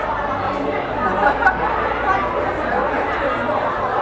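Indistinct chatter of many people talking at once in a crowded hall, with no single voice standing out, and a couple of brief knocks a little over a second in.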